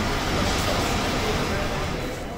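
Steady din of a railway station platform beside a passenger train, with voices mixed in.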